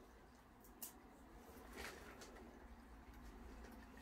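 Near silence: room tone with a faint low hum and a couple of faint short clicks, around one and two seconds in.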